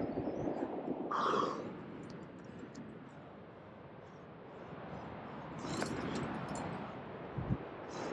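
Live sound of a climber on granite: steady rushing air, two short breathy exhales, one about a second in and a louder one near six seconds, and a dull thump shortly before the end.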